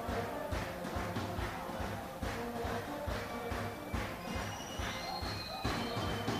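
Music from the stadium stands: drums beating a steady rhythm, with high held notes joining in from about halfway through.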